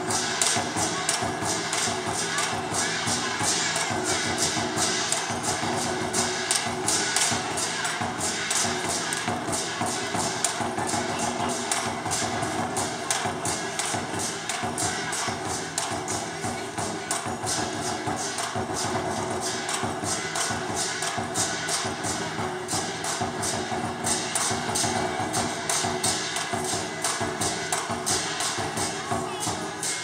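Large Chinese lion dance drum beaten with sticks in a fast, steady rhythm, with bright metallic crashes on the beats, as lion dance accompaniment.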